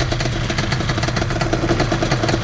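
Quad ATV engines running steadily at low revs: an even, rapid chug with a steady low note.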